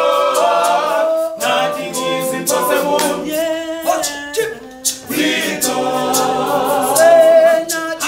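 Group of young men singing gospel a cappella in harmony, with a sharp, regular beat of about three strokes a second keeping time.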